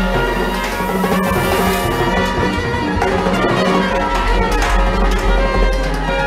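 Live small jazz combo playing: trumpet over upright bass and a drum kit with cymbals.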